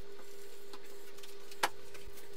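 Steady hum at one pitch, with a single sharp click near the end.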